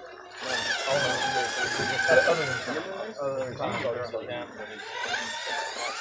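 Indistinct voices talking in the background, mixed with music.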